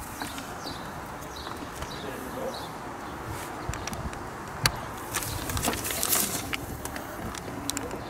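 Hands rummaging through a car's under-dash wiring harness: wires rustling, with a few sharp clicks of plastic connectors, over steady background noise.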